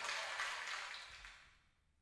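Faint studio sound fading out to silence about a second and a half in, as the broadcast audio is faded down.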